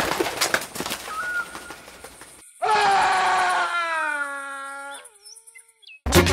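Cartoon sound effects: a fluttering rustle of wings with a faint short chirp, then after a brief gap a loud, long pitched tone that slides slowly down for about two and a half seconds before cutting off.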